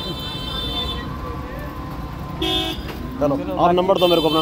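Vehicle horns honking in traffic: one held honk in the first second and a short, louder honk just past the middle, over a low road rumble.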